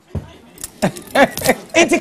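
People talking on a studio panel, with a few short clicks or rattles mixed in.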